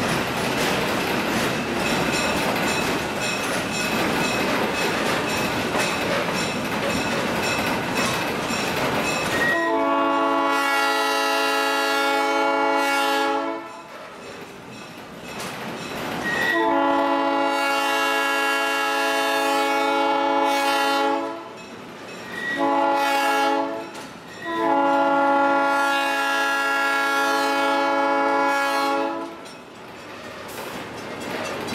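Train running along the rails for about nine seconds, then the 1954 Baldwin RS-4-TC diesel locomotive's air horn sounds the grade-crossing signal: long, long, short, long.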